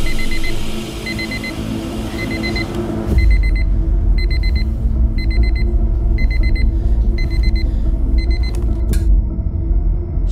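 Electronic alarm clock beeping: single high beeps at first, turning into rapid bursts of beeps repeating about every three-quarters of a second after about three seconds. The beeping stops about nine seconds in. A deep low rumble runs underneath once the bursts begin.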